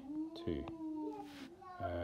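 Speech: a single long, drawn-out spoken "two", held for over a second, with a couple of soft clicks partway through.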